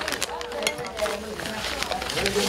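Plastic packaging of a non-invasive ventilation mask crinkling and rustling in gloved hands as the mask and its strap are pulled out of the torn-open bag, in irregular little crackles.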